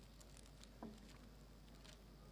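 Near silence: room tone over the table microphones, with faint ticks and rustles of papers being handled. A brief faint squeak glides downward just under a second in.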